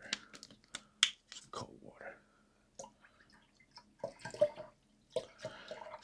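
A clear plastic water bottle being handled: scattered sharp clicks and crinkles of thin plastic, the sharpest crack about a second in.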